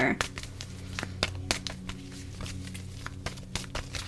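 Light, irregular clicks and taps of tarot cards being handled on a table, over a steady low hum.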